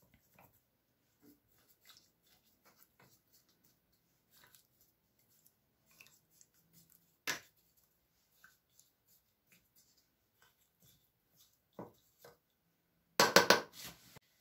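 A metal fork clinking against glass jars while tomato sauce is spooned into them: scattered light taps, one sharper clink about seven seconds in, and a quick run of louder clinks near the end.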